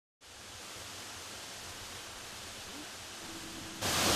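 Waterfall: a steady rush of falling water that fades in at the start and jumps abruptly louder just before the end.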